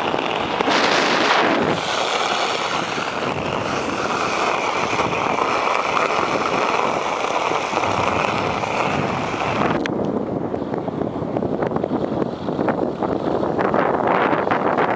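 Wind rushing on the microphone, mixed with the hiss and scrape of ice-skate blades gliding over lake ice. A higher hiss joins about two seconds in and cuts off suddenly near ten seconds.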